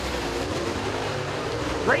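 Dirt super late model race cars' V8 engines running at speed around the track, a steady drone with no single car standing out. The PA announcer starts speaking again near the end.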